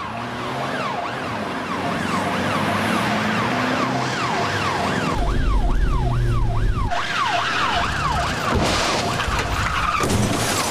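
Police car siren wailing, its pitch sweeping up and down about twice a second, over the engine of a car in pursuit. A louder low engine rumble swells a little past the middle.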